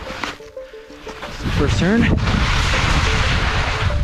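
Wind gusting over the camera's microphone: a rushing noise with a deep rumble that comes up sharply about a second and a half in and stays loud.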